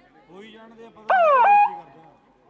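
A loud animal yelp about a second in: two quick cries, each sliding sharply down in pitch, the second ending in a brief held note.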